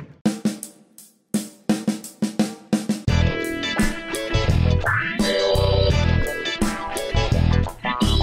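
Rock music with drum kit, guitar and bass. It opens with a few separate drum hits and a brief pause, then the full band comes in about three seconds in.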